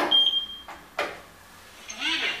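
Lift car-call push button pressed with a click, answered by a single steady high beep lasting about half a second; a second short click follows about a second in.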